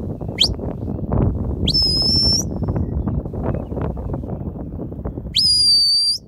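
A sheepdog handler's whistle commands: a short rising chirp, then two sharp whistles that each rise and hold high for about a second, the last near the end. A steady low rushing noise runs underneath.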